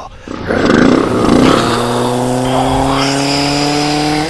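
Motorcycle engine sound effect: a rough, noisy burst, then a steady engine note that rises slightly in pitch over the last two seconds.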